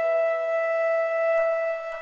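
A shofar (ram's horn) sounding one long, steady note.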